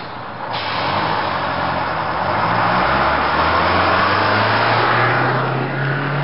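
Coach bus driving off under power: a steady low engine drone that rises a little in pitch near the end, over a constant rush of road noise.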